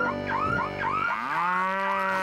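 A cartoon sound effect of short rising whoops, about three a second, over a held chord. About halfway through a cartoon character lets out a long, loud cry whose pitch rises and then holds steady.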